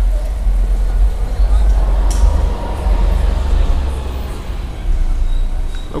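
Outdoor vehicle noise: a steady low rumble with a motor running, swelling for a couple of seconds in the middle.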